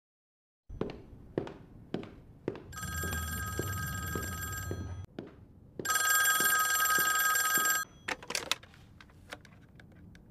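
A desk telephone ringing twice, each ring about two seconds long with a short gap between. A few sharp clicks come before the rings and again just after them.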